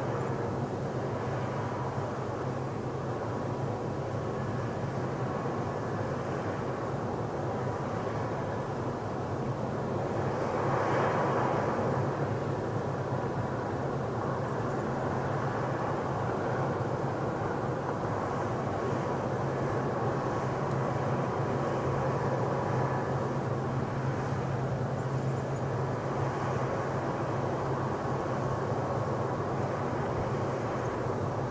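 Steady low rumble and hum of background noise, swelling a little about ten seconds in. No falcon calls.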